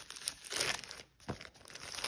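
Thin clear plastic packaging sleeve crinkling in uneven bursts as hands pull it open after it has been snipped, with one sharp click a little past the middle.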